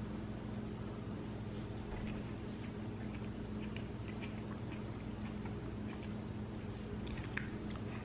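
Faint chewing of a forkful of cooked cauliflower and sausage in tomato sauce, with small soft mouth clicks, over a steady low hum.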